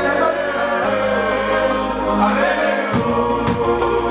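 Live concert music: several voices singing sustained notes together over a band, with regular drum hits.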